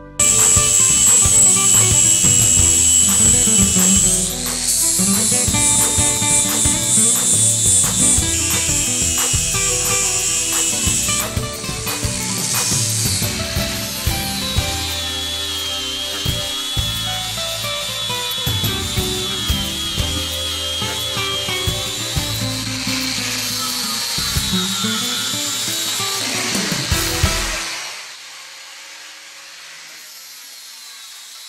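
Music with a beat laid over a four-inch angle grinder fitted with a flap disc, grinding leftover weld off the steel frame rails where the factory brackets were cut away. The grinder's whine rises and falls as it is pressed against the frame. About 28 s in the music cuts out and quieter grinding remains.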